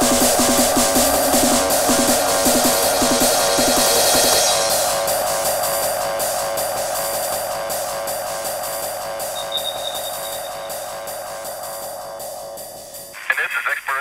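Hardcore electronic track: a fast, even kick drum pounds under a sustained synth layer for the first four seconds or so. Then the kick drops out for a breakdown, and the synth slowly fades. Near the end a spoken vocal sample cuts in.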